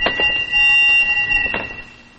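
An alarm buzzer sounding a loud, steady high tone that cuts off about a second and a half in.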